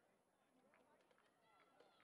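Near silence, with faint distant voices.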